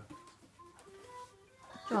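Faint music of held single notes playing from a television, with a woman's exclamation right at the end.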